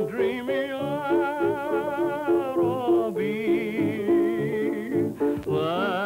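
Male vocalist singing held notes with strong, wide vibrato, accompanying himself on a grand piano. The sound is a dull, narrow early sound-film recording.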